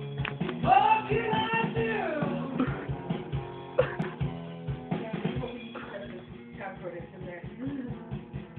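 A band's rock recording playing back over studio monitor speakers: guitar with a sung vocal line, the singing strongest in the first few seconds and the mix quieter after that.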